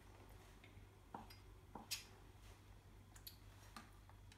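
Knife cutting cooked chicken breast on a chopping board: a handful of faint, light taps spread unevenly over the few seconds, with near silence between them.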